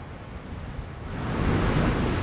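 Ocean surf washing onto a beach, a steady rushing wash that swells louder about halfway through.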